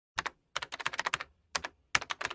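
Keyboard typing sound effect for text being typed out on screen: quick runs of sharp key clicks with short pauses between words.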